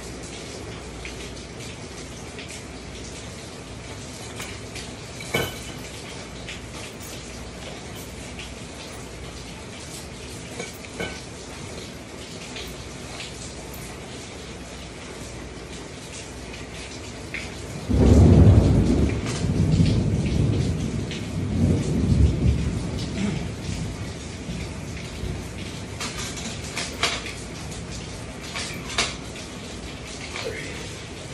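Steady rain with a roll of thunder about eighteen seconds in: a sudden loud, low rumble that swells twice and fades away over several seconds.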